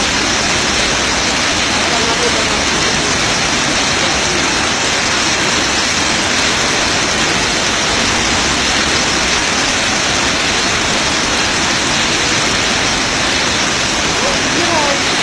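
A loud, steady rushing noise that does not change.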